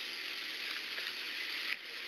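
Steady hiss of outdoor background noise picked up by a police body camera's microphone, with a short break about three-quarters of the way in.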